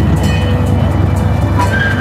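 Miniature amusement-park train running along its track: a steady low rumble, with background music playing over it.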